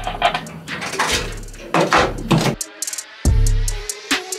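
Background music with a drum beat, a short break, then a heavy bass note near the end.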